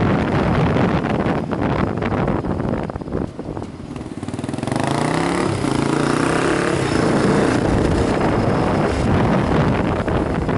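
Motorcycle engine heard from the rider's seat, with wind rushing over the microphone. About four seconds in the wind drops briefly, then the engine revs up with a rising pitch and runs on steadily under the wind noise.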